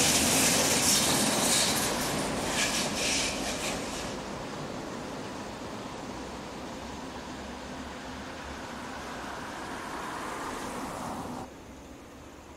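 An electric train, a DB electric locomotive hauling passenger coaches, passes close by: wheels rumble and clatter on the rails, with a few sharp clicks about three seconds in. The sound then drops to a quieter, steady, more distant train rumble, which cuts off shortly before the end.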